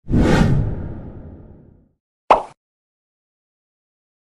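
Animated-intro sound effects: a whoosh-like hit that fades away over about a second and a half, then a single short pop a little after two seconds.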